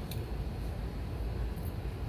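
Low, steady outdoor background rumble, with two faint short clicks: one just after the start and one near the end.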